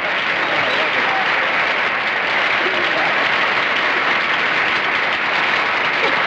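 Studio audience applauding, a dense, steady clapping.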